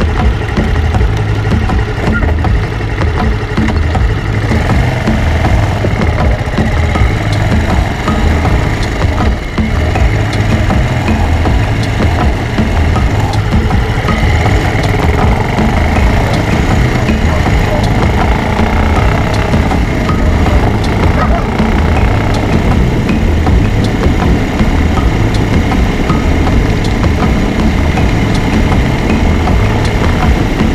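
Bajaj Avenger 220's single-cylinder engine running steadily close by, first at a standstill, then carrying the bike along the road at an even low speed.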